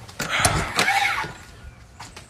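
A door being opened: a click, then about a second of scraping noise.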